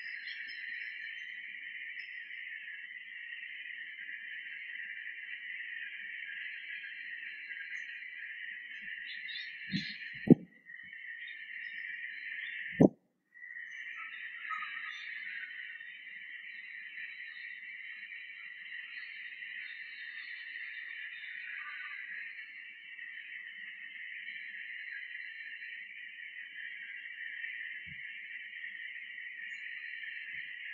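Steady hiss, with two sharp clicks about ten and thirteen seconds in; the sound cuts out briefly after each click.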